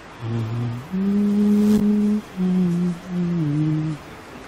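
A man humming a slow tune with closed lips: a short low note, then a long held note, then two shorter notes, the last stepping down in pitch.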